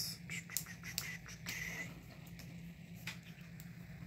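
Small taps and scratches of a craft knife tip on paper as a sticker is lifted from a planner page, with a brief scrape about a second and a half in, over a faint steady hum.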